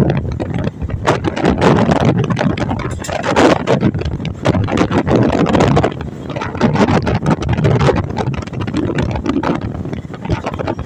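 Wind rushing and buffeting the microphone at the window of a moving passenger train, loud and uneven, with the train's running noise underneath.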